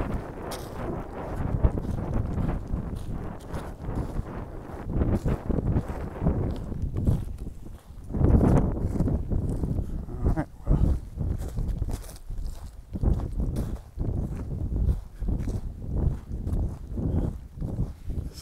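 Footsteps of a person walking over dirt strewn with pine needles and cones, a stroke every half second or so. Wind buffets the microphone through the first several seconds.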